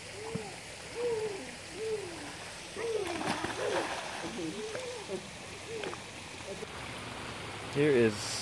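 Splashing of a person swimming in a pool, strongest about three seconds in, over steady rain. A frog calls throughout, a short rising-and-falling note about once a second.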